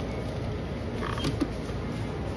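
The curved clear plastic door of a convenience-store self-serve coffee machine being slid shut over a cup of ice, with a short rub and a click a little over a second in, over a steady low hum.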